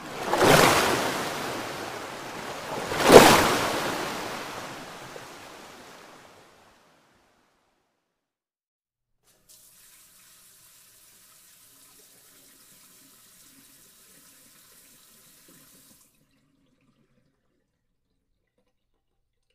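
Water splashing and sloshing in a round tub: two surging splashes, about half a second and three seconds in, the second the loudest, each dying away, the sound fading out by about six seconds. After that, near silence.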